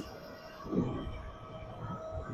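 Tuttio Soleil 01 electric dirt bike cruising flat out at about 36 mph on its stock 48V tune: wind rushes over the phone microphone under a steady thin whine from the electric drive. There is a brief soft low sound a little under a second in.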